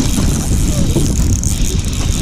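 Spinning reel being cranked as an angler fights a hooked walleye on light line, over a loud, steady low rumble.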